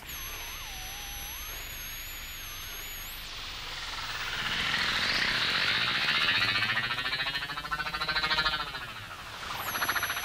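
Electronic sound effects from a Synton sound effect box on a double-tracked tape piece. A faint wavering, gliding tone over hiss gives way, about four seconds in, to a louder swirling whoosh that sweeps up and down, peaks, then fades near the end.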